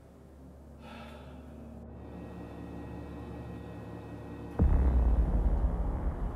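Ominous horror-film sound design: a low drone of steady tones swells slowly, then a sudden deep bass boom hits about three-quarters of the way through and carries on as a loud low rumble, a jump-scare sting.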